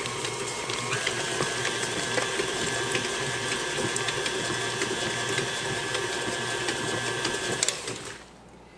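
KitchenAid tilt-head stand mixer running at low speed with its flat beater, beating an egg into creamed butter and brown sugar: a steady motor whine whose pitch shifts about a second in. It switches off just before the end.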